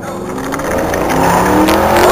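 Race car engine sound effect accelerating, its pitch rising as it grows louder.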